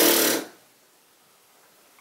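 A person's brief voiced sigh in the first half second, then near silence.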